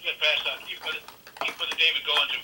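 A man's voice over a telephone-quality call line, thin-sounding with no high end, answering with a prayer request.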